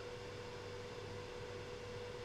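Faint room tone: a steady low hum with a thin, high, constant tone.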